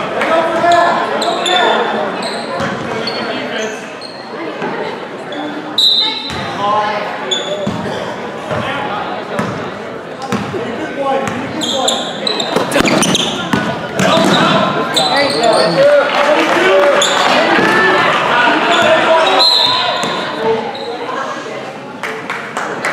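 Basketball game in a large echoing gym: the ball bouncing on the hardwood court, with short high sneaker squeaks and players and spectators talking and shouting throughout.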